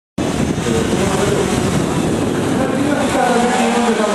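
Toyota Vitz (SCP10) four-cylinder engine revving hard as the car is driven through a gymkhana course, accelerating out of a turn. A man's voice joins over it in the last second or so.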